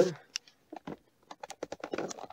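A quick, irregular run of light clicks and taps, packed closer together in the second second. They are faint, like handling noise or keys being pressed.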